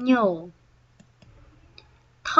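A voice says one brief syllable with falling pitch, then a couple of faint sharp computer-mouse clicks about a second in, advancing the slide.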